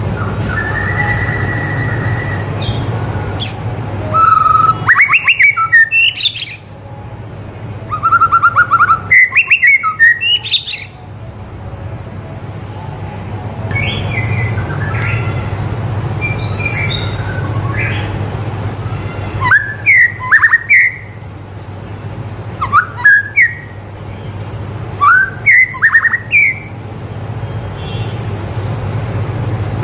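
White-rumped shama (murai batu) in full song, about five loud bouts of fast, sharply rising whistled notes. Quieter, softer chirps come between the bouts over a steady low hum.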